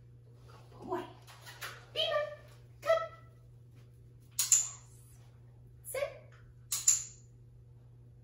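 A woman calling a puppy with a few short, high-pitched wordless vocal sounds, followed by two pairs of sharp clicks about two seconds apart.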